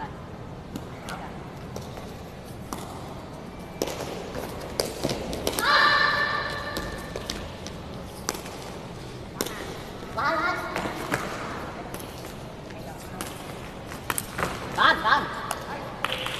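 Shouts echoing in a sports hall, the loudest about six seconds in, with others around ten and fifteen seconds, over scattered sharp taps of a shuttlecock being kicked in a rally.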